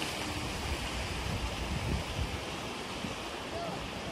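Wind buffeting the microphone, an irregular low rumble over a steady outdoor noise bed.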